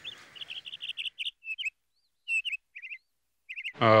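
Small birds chirping: clusters of short, high chirps with brief pauses between them.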